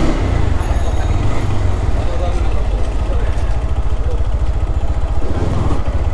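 GPX Demon GR165R sport bike's single-cylinder engine running as it is ridden slowly in second gear, under a steady heavy low rumble.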